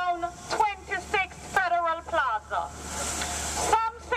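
A person speaking in short phrases, broken about two and a half seconds in by roughly a second of steady hiss before the voice picks up again.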